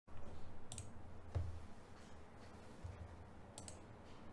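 A few faint, sharp clicks, two of them doubled, with soft low thumps among them, the loudest about a second and a half in, over quiet room noise.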